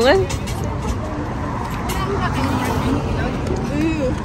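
Steady low rumble of outdoor background noise, with faint voices of people talking.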